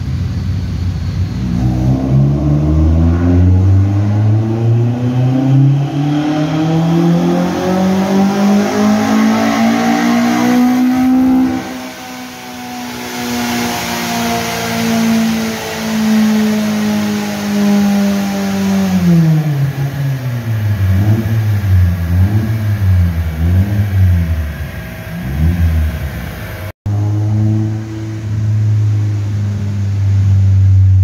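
Toyota Corolla AE111's four-cylinder engine doing a full-throttle dyno pull: the revs climb steadily for about ten seconds, then the throttle comes off and the engine runs on at high revs, more quietly, before falling away. A few quick throttle blips follow, and after a brief break near the end it settles into steady low-rev running.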